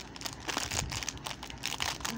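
Packaging crinkling as it is handled, a quick run of irregular crackles.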